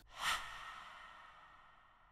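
A soft, breathy whoosh about a quarter second in that fades away over about a second and a half: a transition sound effect under a title card.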